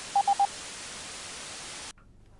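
The last three short beeps of a Morse code SOS, a single steady tone, followed by a steady hiss of static that cuts off suddenly just before the end.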